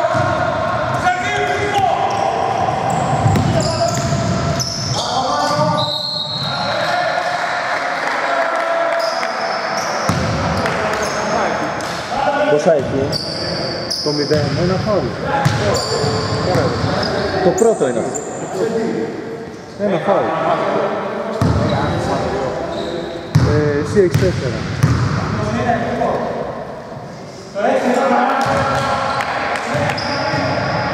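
Basketball game sounds in a large, echoing gymnasium: a ball bouncing on the court, players' shouted voices and short high squeaks.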